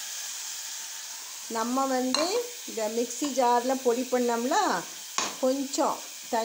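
Chicken pieces tipped into a hot pressure-cooker pot of masala, sizzling steadily, with two short knocks about two and five seconds in. A voice talks over the sizzle from about a second and a half in.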